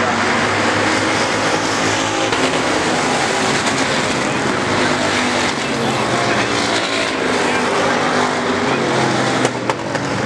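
A pack of dirt-track stock cars racing together at speed, their engines blending into one steady, loud drone. There is a short dip with a couple of sharp clicks near the end.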